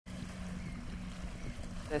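Small waves lapping onto a sandy shore, a steady wash of water with a faint low hum beneath it.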